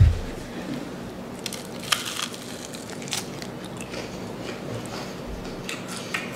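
A bite into a crispy breaded fried chicken wing (a McDonald's Mighty Wing), then a few scattered crunches as it is chewed, after a low thump at the very start.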